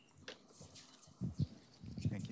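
Quiet room tone in a lecture hall, with a couple of soft footsteps a little past the middle.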